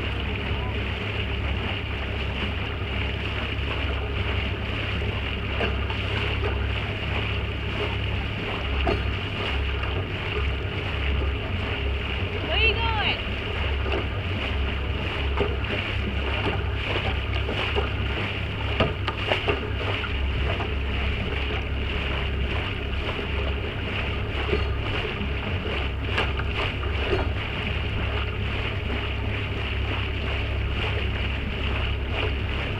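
Steady wind buffeting the microphone over the rush of water past a moving boat's hull, with a short sliding tone about halfway through.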